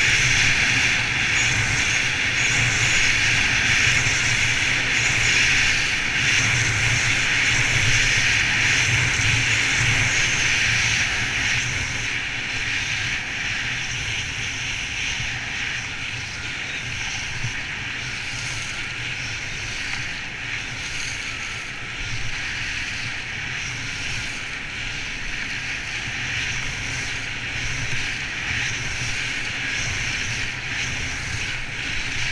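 Steady rush of wind over the camera microphone mixed with the hiss and scrape of skis carving over groomed snow during a fast downhill run, a little louder for roughly the first ten seconds and then somewhat quieter.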